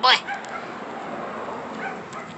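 A husky puppy whimpering softly, giving a few short, faint, high squeaks.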